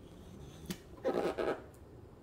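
Hands handling a cardboard box wrapped in plastic film: a light click about two-thirds of a second in, then a brief rustle of the film about a second in.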